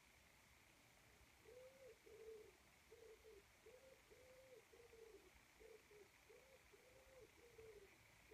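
A pigeon cooing faintly: a run of soft, rounded coos in repeated phrases, starting about a second and a half in and carrying on to the end.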